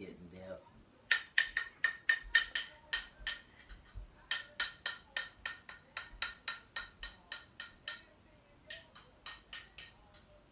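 A metal spoon tapped rapidly against a small ceramic bowl, about four sharp ringing clinks a second, in three runs with short pauses between them. The tapping is a call to the household pet to come for the leftovers.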